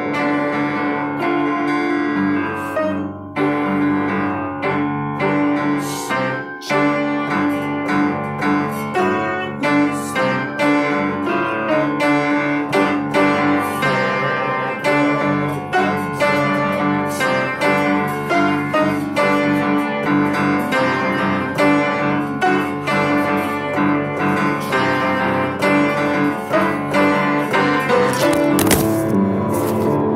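Piano playing a continuous passage of notes and chords.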